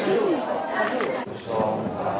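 Several people's voices talking at once: general chatter in a room.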